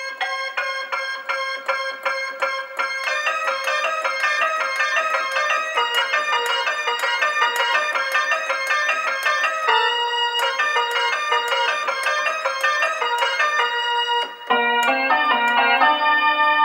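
Roland D-20 synthesizer played with a piano-like tone: a quick run of repeated notes over a steadily held note, changing notes about ten seconds in, with a lower note coming in near the end.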